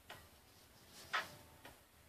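Quiet room tone with a few light clicks, one sharper click about a second in.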